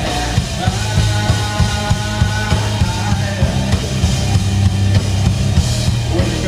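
Live rock/metal band playing: distorted electric guitars over a drum kit with fast, steady drum hits and a heavy low end. A held high guitar note sounds for a second or so near the start.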